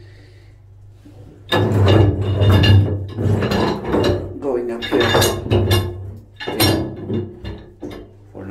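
A man's voice, loud and close, with a cough about two and a half seconds in, over a steady low hum.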